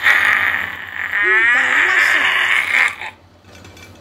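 An excited, cheering shout that lasts about three seconds and then cuts off.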